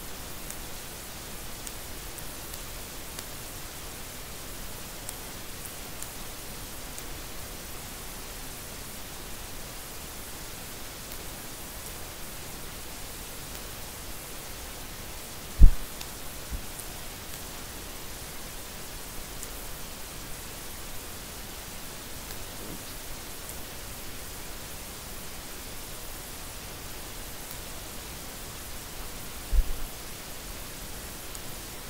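Steady hiss of background noise. A sharp low thump about halfway through, and a smaller one near the end.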